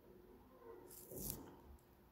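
Near silence, with a faint, brief scratch of a calligraphy pen's broad nib on paper about a second in.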